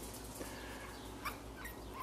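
A 15-day-old Cavalier King Charles Spaniel puppy giving a few faint, short squeaks while being picked up and turned over in the hand.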